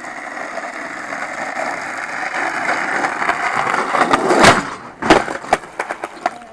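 Skateboard wheels rolling over rough asphalt, a steady grinding rumble that slowly grows louder as the board approaches. About four and a half seconds in the board strikes the ground with a sharp clack, followed by two or three lighter knocks.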